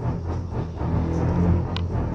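Ominous horror-film background music built on low, sustained notes.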